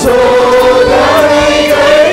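Congregation and worship band singing a Tamil praise song loudly together over a steady beat, with one long held note.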